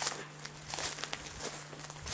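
Footsteps of a walking hiker crunching through dry fallen leaves on a dirt trail, a few steps in even succession.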